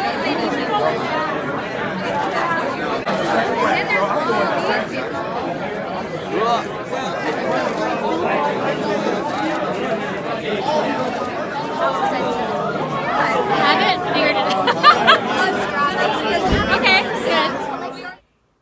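Crowd chatter: many people talking at once, a steady babble of overlapping voices with no single speaker standing out.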